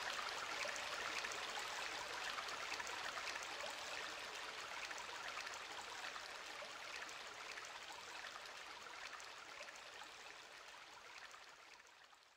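Hissing noise wash at the close of an electronic trance track, with no beat or melody left, dying away slowly over about twelve seconds.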